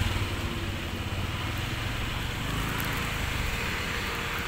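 Steady low hum of motor vehicle engines with street traffic noise.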